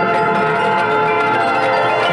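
Marching band playing, with ringing bell-like mallet percussion from the front ensemble standing out over sustained chords.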